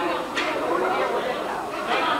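Indistinct chatter of several people talking at once, no words clearly picked out.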